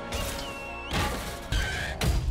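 Film battle soundtrack: music under a dense effects mix with crashes and impacts, a high held tone that cuts off about a second in, and a loud crash about one and a half seconds in.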